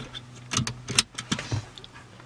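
Several sharp clicks and knocks in quick succession inside a car, over a low steady hum; they stop about one and a half seconds in.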